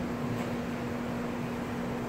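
Steady room hum and hiss from running machinery, with one constant low tone.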